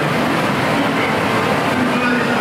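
Steady din of a crowd in a large indoor hall, with faint voices running through it.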